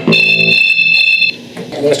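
A steady high-pitched electronic tone made of a few stacked pitches, like a beep, held for just over a second and then cut off suddenly. A man's voice starts near the end.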